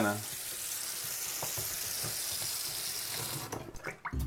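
Kitchen faucet running into a stainless steel sink: a steady hiss of water that dies away near the end, followed by a few light clicks.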